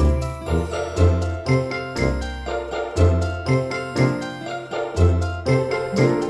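Background music: a light tune of short pitched notes, about two a second, over a bass line that changes about once a second.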